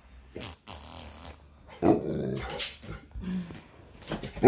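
Large dog growling in a few irregular stretches, the loudest starting about two seconds in and lasting nearly a second.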